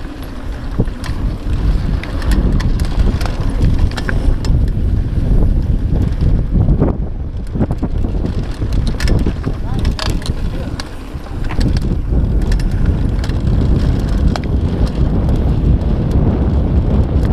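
Wind rumbling over the microphone of a camera riding on a mountain bike descending a dirt trail, with tyre noise on the dirt and frequent clicks and rattles from the bike over bumps. The level dips briefly a little past halfway.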